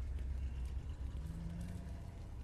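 A low, steady rumble, with a faint steady hum joining a little past the middle.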